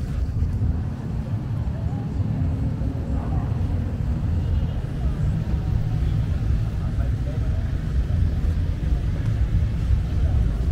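Outdoor city street ambience: a steady low rumble with faint distant voices.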